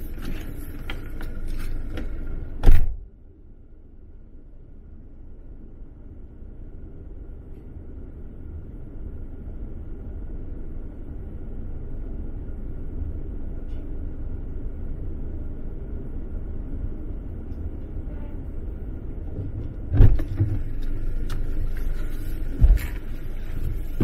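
Car door shut with a loud thump about three seconds in, then the steady low rumble of the car's engine idling, heard from inside the closed, empty cabin. About twenty seconds in the door opens again with rustling and knocks as someone climbs back in, and a loud door thump comes near the end.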